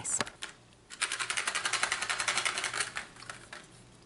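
A fast, even run of mechanical clicks starting about a second in and lasting about two and a half seconds, like a small mechanism rattling.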